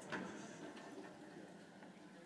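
Faint room noise with one brief click just after the start and a few fainter ticks.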